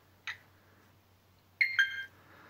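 Flysky Noble Pro radio transmitter giving a short electronic beep of a few quick notes near the end, its confirmation tone as the model name entry is accepted and the screen returns to the model menu.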